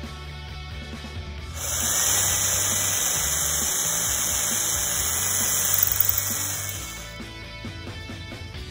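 Cordless drill running for about five seconds against a wooden handrail, a steady motor whine over a harsh grinding noise, getting louder just before it stops.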